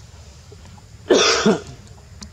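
A single loud, harsh cough about a second in, lasting about half a second.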